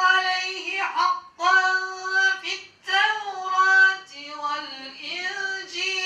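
A man's solo melodic chant into a handheld microphone, in a high voice with long held notes that bend and turn, in the style of Qur'an recitation. The phrases break for breath about a second in, near three seconds and again around four seconds.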